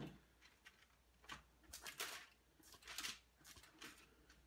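Faint rustling of thin Bible pages being leafed through, several short rustles a second or so apart, as a passage is looked up.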